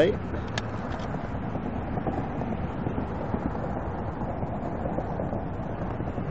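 Steady outdoor background noise, an even rumble and hiss, with a faint click about half a second in.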